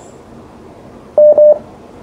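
Two short telephone beeps in quick succession a little over a second in, a steady mid-pitched tone on a phone line that is waiting for a caller to connect, over a low hiss.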